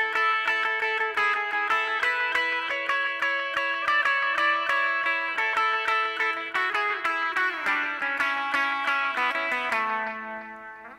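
Electric guitar playing a lead line: a quick run of picked notes on the second string, about four or five a second, with the open high E string left ringing underneath as a drone. Near the end the line resolves to a held A at the second fret of the third string and lets it ring out.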